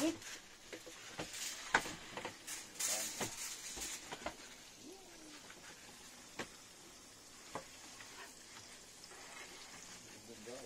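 Paper towel rustling and crinkling as it is pressed onto freshly fried anchovies and lifted off to blot the oil, with scattered light clicks and taps. The sound is busiest in the first four seconds and sparser after that.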